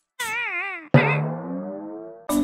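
Cartoon title-card sound effects: a short warbling tone that wobbles up and down in pitch, then a sudden struck note that rings and fades.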